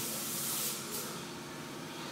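Steady hissing background noise of a workshop, a little louder in the first half-second and then easing.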